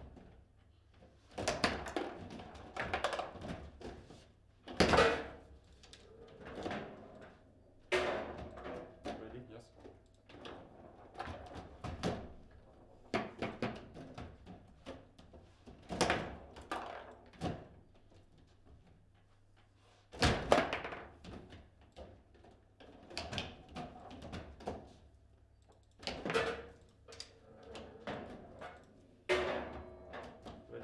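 Table football play: irregular sharp clacks and knocks as the ball is struck by the plastic players and hits the table's walls and goals, with rods and handles banging against the table, and several loud knocks, the loudest about five seconds in and again about twenty seconds in. Twice in this stretch a shot goes in for a goal.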